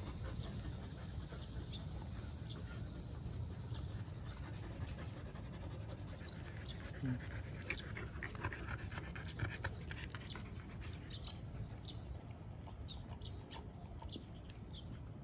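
Jindo dogs panting and sniffing close by as a young dog greets a puppy nose to nose, with many short high-pitched calls scattered through, more of them in the second half.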